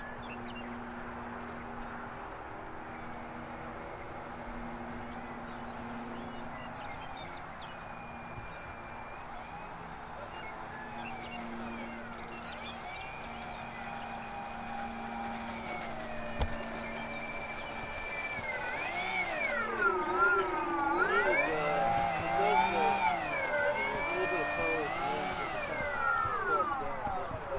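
Twin electric motors and propellers of a Nexa A-26 Invader RC model taxiing on the runway, their whine gliding up and down in pitch with throttle changes and growing louder and more varied in the last several seconds. A single sharp click partway through.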